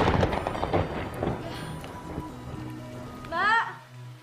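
A sudden loud crash with a crackling, rumbling tail that dies away over about three seconds, over soft background music, as the power cuts out. Near the end a woman gives a short cry that rises and falls in pitch.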